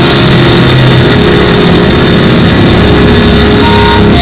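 Live rock band playing, electric guitars, bass and drums in a dense, distorted wash of sustained chords; the recording is clipping badly.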